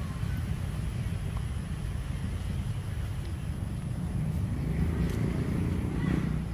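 Steady low outdoor rumble, with a faint humming sound swelling near the end.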